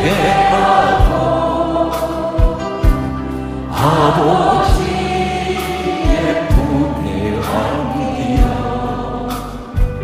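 A choir singing a slow Korean worship hymn in a large hall, with instrumental accompaniment and low drum beats every second or so. The lyric at this point is 눈물로써 회개하고 아버지의 품에 안기어 ("repenting with tears, held in the Father's arms").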